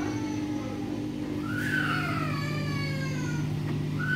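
Samsung WF80F5E0W2W front-loading washing machine in its final spin, the drum and motor keeping up a steady hum. A cat meows over it with one long call that rises and then falls, about a second and a half in.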